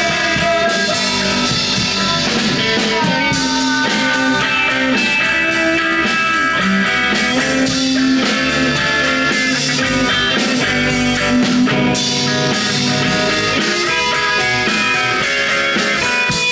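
A rock band playing live: electric guitars, bass guitar and drum kit, with a singer.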